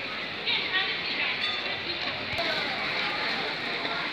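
Busy pedestrian street ambience: indistinct chatter of passers-by over a steady general town noise.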